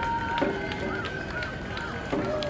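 Gion-bayashi festival music: a high bamboo flute holding a note with short bends and ornaments, over a few light strikes of small brass hand gongs, with the murmur of the crowd beneath.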